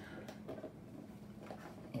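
Faint handling noise of a cardboard mailer box: a few light taps and scrapes as hands work at its tucked-in lid to pry it open.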